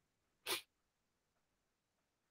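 One short, sharp burst of breath from a person, about half a second in.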